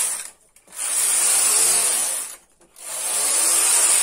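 A punch-card knitting machine's carriage is pushed by hand across the needle bed, knitting plain stockinette rows. Each pass is a steady mechanical rasp of about a second and a half: one ends just at the start, a full pass follows about a second in, and another begins near the end, with brief pauses at each turn.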